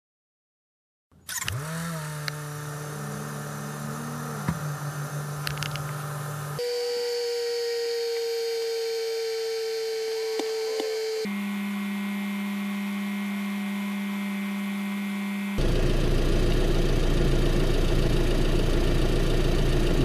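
Honda Civic engine starting about a second in, its pitch rising quickly and settling into idle, with a brief rise in revs. It is followed by several cut-together stretches of steady idling. The engine is being run to warm up and bleed air from the freshly refilled cooling system after a thermostat replacement.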